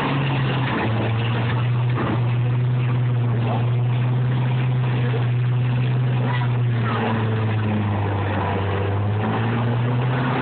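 Combine harvester diesel engines running with a steady low drone. There is a brief knock about two seconds in.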